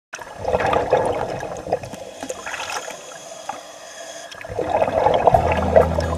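Water sloshing and bubbling, heard as two swells with fine crackles, the second one building near the end. Low, steady music tones come in underneath about five seconds in.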